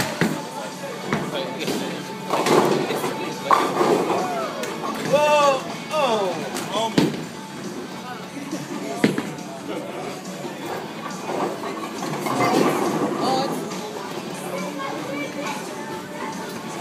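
Bowling alley sounds: background music and voices calling out, broken by several sharp knocks of bowling balls and pins.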